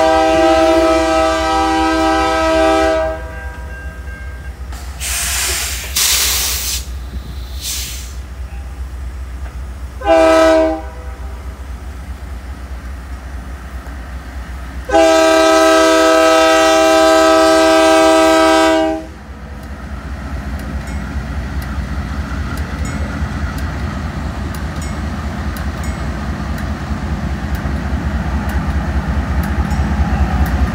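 Union Pacific diesel freight locomotive sounding its multi-chime air horn for the crossing: a long blast, a short one about ten seconds in, then another long one, with a burst of hiss in between. After the last blast the locomotives' engine rumble and wheel noise build as the train reaches the crossing.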